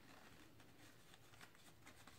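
Near silence: room tone with faint rustling as a paper coffee filter is folded.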